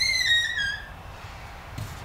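Front door hinge creaking as the door swings open: one high squeal about a second long, dropping in pitch in small steps.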